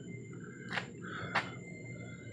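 Steady low background hum in a room, with two faint, brief clicks a little over half a second apart.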